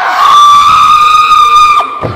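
One long, high, loud scream from a stage actor, held at a steady pitch for almost two seconds and then cut off sharply.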